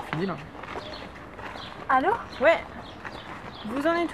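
Speech: a few short bursts of voice, the words not made out.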